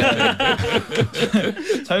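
Men chuckling and laughing amid conversation.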